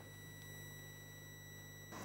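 Faint steady electrical hum with a thin high-pitched whine, a pause with no speech; the tones cut off just before the end.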